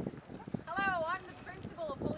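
People's voices: a high, wavering vocal call about halfway through, with short bits of talk and a series of low knocks underneath.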